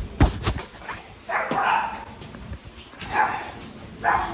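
A dog barking in two short bursts, one about a second and a half in and one past three seconds, after a few knocks from the phone being handled.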